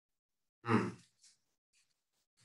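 A man's short voiced sigh, about half a second in, followed by a couple of faint breath noises.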